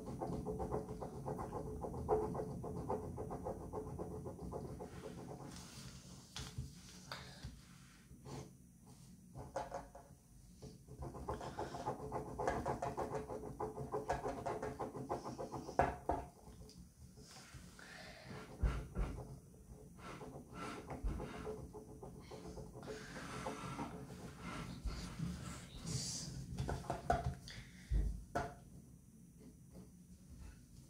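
Pen scratching on paper in many short, irregular strokes while drawing small buttons on a paper phone.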